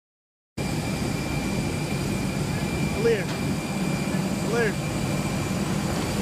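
Steady jet aircraft whine, a high tone over a low hum, cutting in abruptly about half a second in. Two short vocal sounds come around the middle.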